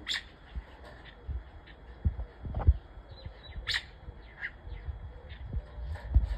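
Birds in an aviary giving short, scattered chirps and calls, the sharpest near the start and a little under four seconds in. Several low thumps also sound, the loudest about two and a half seconds in.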